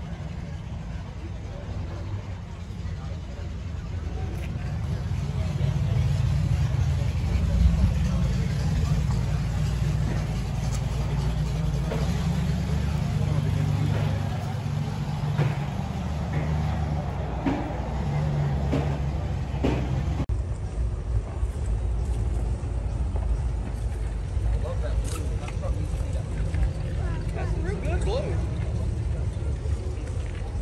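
Outdoor ambience of people talking in the background over a steady low rumble. The sound changes abruptly about two-thirds of the way through.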